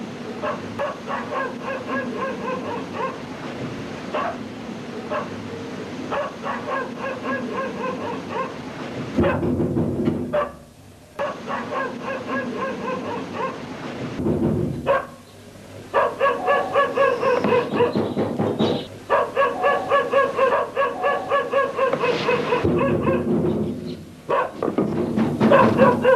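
Dogs barking and yapping in quick repeated runs over background music, with two short breaks in the middle.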